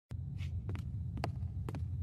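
A steady low hum with a handful of soft, irregular clicks or crackles over it.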